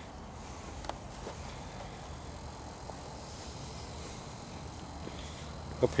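Faint, steady background noise of a night outdoors, with one short click about a second in and a thin, steady high-pitched whine that switches on just after it; a voice speaks at the very end.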